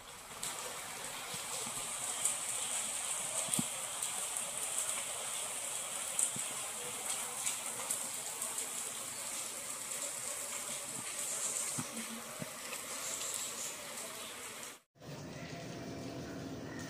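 Steady rain falling, a continuous hiss with scattered small ticks; it drops out for a moment near the end.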